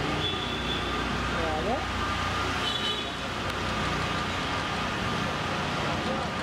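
Street traffic noise, a steady low rumble, with indistinct voices of people close by.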